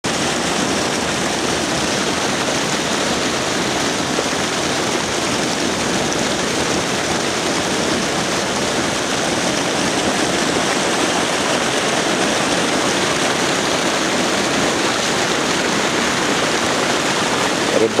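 Dense school of common carp spawning in shallow water, thrashing at the surface: a continuous mass of splashing and churning water.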